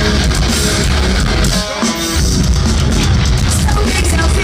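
Metalcore band playing live: distorted electric guitars, bass and a drum kit, loud and dense. The drums and bass drop out briefly about halfway through, then come back in. It is a rough, bad-sounding audience recording.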